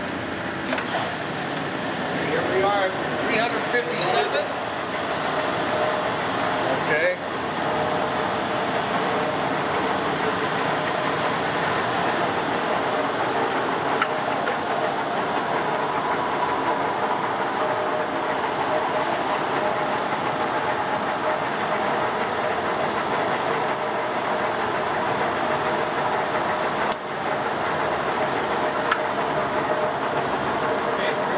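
Large Leblond Model NI heavy-duty engine lathe running under power, a steady mechanical hum of motor and spindle gearing, broken by a few sharp clicks.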